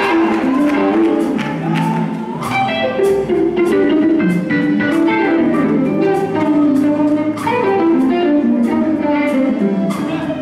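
Live gospel band music led by electric guitar, with percussion keeping a steady beat.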